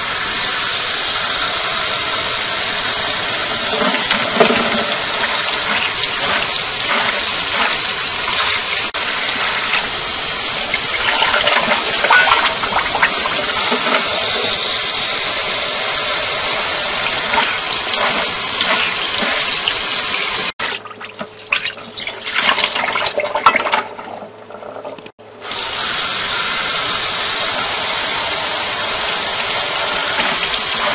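Tap water pouring in a steady stream onto rice in a stainless steel mesh strainer, rinsing it. Just after twenty seconds in, the steady flow sound breaks off for about five seconds of quieter, uneven sounds, then the running water resumes.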